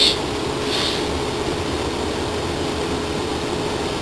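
Steady interior noise inside a Class 444 Desiro electric multiple-unit carriage: a low rumble with a constant hum over it. A brief hiss comes about a second in.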